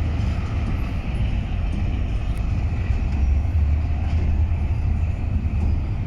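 Diesel freight locomotives passing, including BNSF units and a Norfolk Southern SD70ACe: a steady, deep engine rumble with a lighter rolling noise above it.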